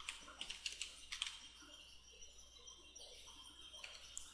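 Faint clicks of computer keyboard keys being typed: a quick run of keystrokes in the first second and a half, then a pause and one more keystroke near the end.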